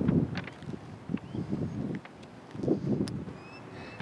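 Irregular soft footsteps on asphalt, with wind buffeting the microphone.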